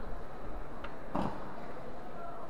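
Steady background noise of a large hall, with one faint click a little under a second in and a single short spoken word just after.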